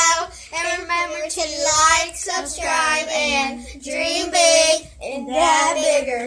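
Children singing in drawn-out, wavering phrases with short breaks between them.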